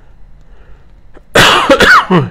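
A man coughing into his fist: after a quiet start, a short, loud burst of coughs comes about one and a half seconds in.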